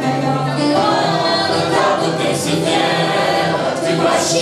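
A group of people singing a song together, choir-style, holding notes, led by a conductor.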